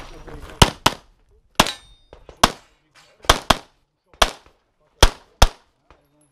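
Pistol shots fired in quick succession on a practical-shooting stage: about nine sharp reports over five seconds, several in fast pairs, with short pauses between groups.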